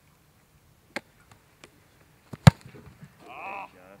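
A football being punted: the foot strikes the ball in one sharp thud about two and a half seconds in, the loudest sound, after a couple of lighter taps. A man's short call follows.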